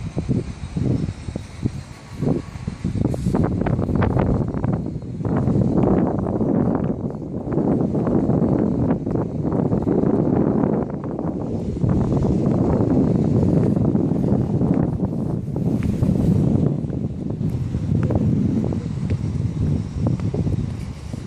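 Wind buffeting the microphone: a gusty low rumble that swells and drops unevenly throughout.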